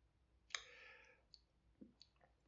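Near silence broken by a man's quiet mouth click and a soft intake of breath about half a second in, then a couple of faint lip clicks, as he pauses between lines of reading.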